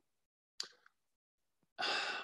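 A man's breath: a short, quick intake about half a second in, then a longer sigh-like exhale starting near the end.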